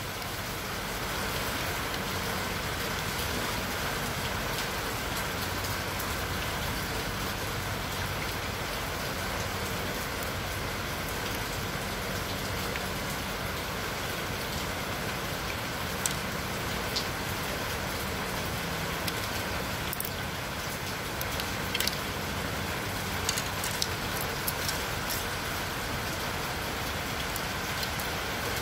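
A steady, even hiss throughout, with a few small sharp clicks, mostly in the second half, as the plastic casing of a laptop battery pack is pried apart to reach its cells.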